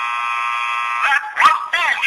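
A steady electronic buzzer tone that cuts off about a second in, followed by a high-pitched, wavering voice.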